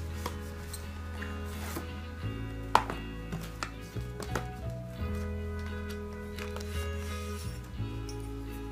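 Slow background music of held chords, changing about every two and a half seconds. Over it come scattered clicks and light knocks from a cardboard knife box and its clear plastic sleeve being handled, with one sharp click a little under three seconds in.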